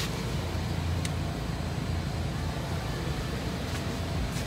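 A steady low mechanical rumble, with a short click about a second in.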